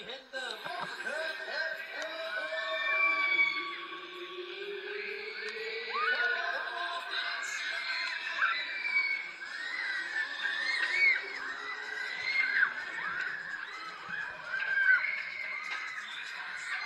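Riders screaming on a spinning Huss Booster thrill ride, many voices rising and falling and overlapping, with a long drawn-out yell early on.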